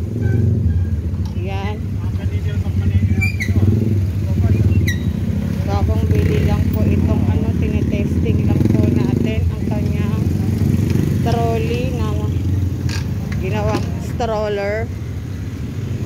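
Small wheels of a wire-basket pet trolley rolling over rough, grooved concrete: a steady low rattling rumble, with short bits of voice over it.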